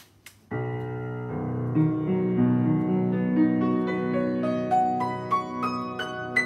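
Schwechten upright piano, newly fitted with a Wessell, Nickel & Gross under-damper action, being played as a test of the restored action. A chord sounds about half a second in, and then notes climb step by step into the treble in the second half.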